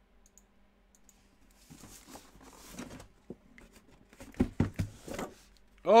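Cardboard box being handled and opened: soft rustling and scraping, then a quick cluster of sharp knocks a little past the middle.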